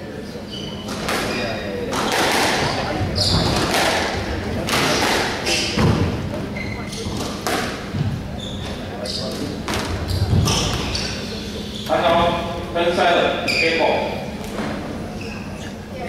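Squash rally: sharp, irregular smacks of the ball off rackets and the court walls, with players' footfalls on the wooden floor, echoing in a large hall.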